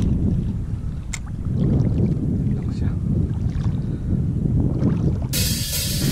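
Wind rumbling on the microphone over shallow sea water, with a few faint clicks; music cuts in suddenly about five seconds in.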